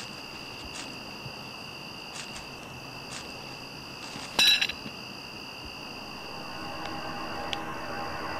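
Crickets trilling steadily in the night, with one short, bright clinking burst about halfway through. Faint music swells in over the last couple of seconds.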